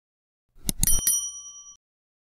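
Subscribe-button animation sound effect: a few quick clicks just over half a second in, then a bright, short bell ding that rings for most of a second.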